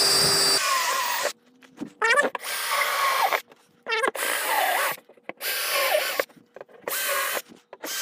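Cordless drill boring a row of drainage holes through the side of a plastic 55-gallon barrel, in about six short bursts with brief pauses between holes.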